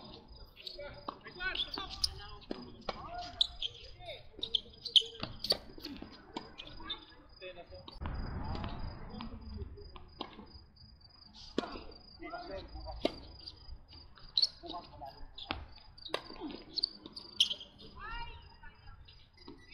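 Tennis racket strokes and ball bounces on a hard court, sharp knocks coming at irregular intervals through the rallies. Beneath them runs a steady, evenly pulsed high chirping of insects.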